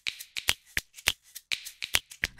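A run of sharp, dry clicks, about four a second and slightly uneven, with near silence between them.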